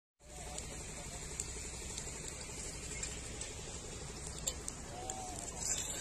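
Faint crackling of burning tyres, a few sharp pops over a low steady background noise. A faint distant voice comes in briefly twice, about half a second in and near the end.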